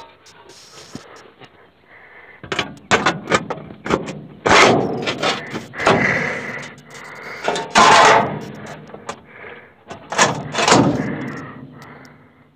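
Sheet-metal stove pipe and combine auger parts being handled: a run of metal clanks, knocks and scrapes, loudest about four and a half and eight seconds in.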